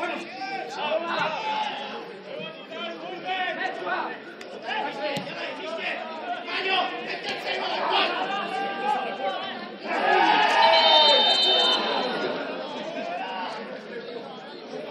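Players and spectators shouting and calling across an outdoor football pitch, several voices overlapping, with one loud, long call about ten seconds in.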